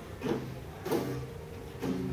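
Two acoustic guitars fingerpicked softly, a few plucked notes ringing out in a pause between sung lines.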